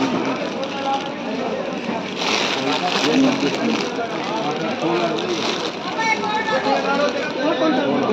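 Several people talking in a busy shop, no one voice clear, with a short rustle of plastic yarn packaging being handled about two seconds in.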